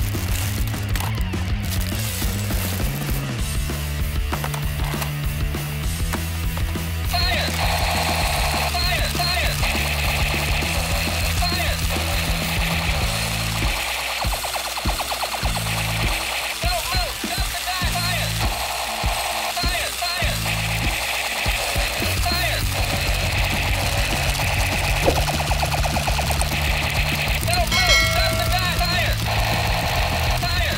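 Background music with a steady bass beat. From about seven seconds in, a light-up toy gun's battery-powered electronic sound effects join it: looping, warbling high tones.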